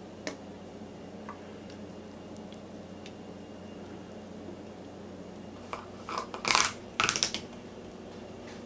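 Hand-handling sounds around a plastic maple syrup jug being filled from a glass measuring cup: the pour itself is nearly silent, with a few faint clicks. From about six seconds in there is a short run of louder scraping and clicking as the jug's plastic cap is put on.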